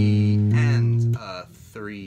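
Four-string electric bass guitar playing the riff slowly: one low note held for about a second, then cut off.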